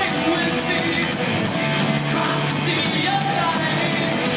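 Live heavy metal band playing: electric guitars through amplifiers over a drum kit, a steady, dense wall of sound.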